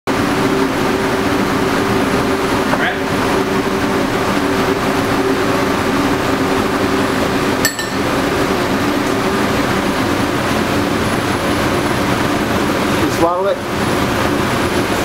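Commercial kitchen exhaust hood fans running steadily: a loud rush of air with a low hum under it, broken by a short click a little past halfway. A man laughs briefly near the end.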